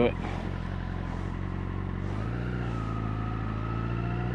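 A liter-class sport bike's engine running under the rider at low speed, its note changing about two seconds in as the revs shift.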